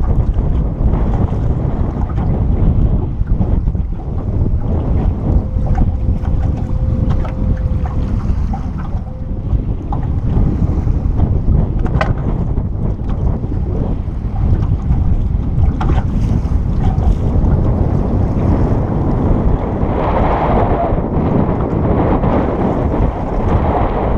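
Strong wind buffeting the microphone in a steady low rumble, with choppy lake water washing against the boat.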